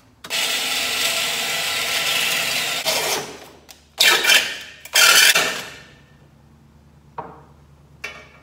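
Cordless drill spinning a grinding stone against the metal of a small engine's recoil starter cover, grinding out a ragged drilled hole in its centre. One run of about three seconds, then two short bursts about a second apart.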